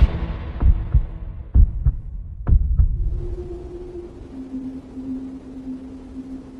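Heartbeat sound effect in the edited soundtrack: three double thumps, lub-dub, about a second apart, giving way to a low steady hum tone that drops a step in pitch partway through.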